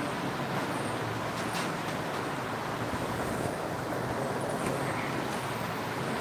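Steady background noise, a low hum with hiss, and no speech.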